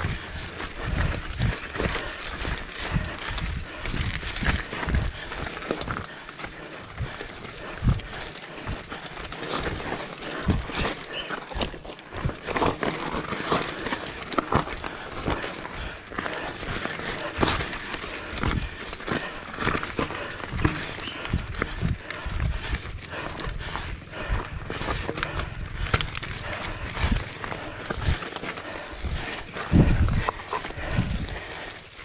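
Mountain bike rolling over a loose, stony dirt track: the tyres crunch on the rocks and the bike rattles with many irregular sharp knocks.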